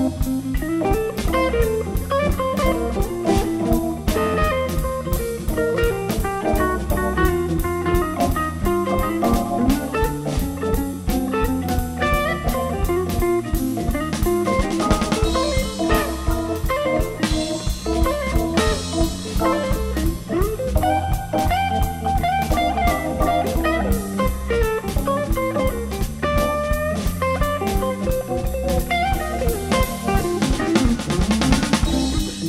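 Blues band playing an instrumental passage without singing: guitar lines over a steady drum-kit beat.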